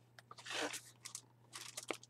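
Packaging rustling and crinkling as items are taken out of a box, with a few light clicks and one sharp click near the end.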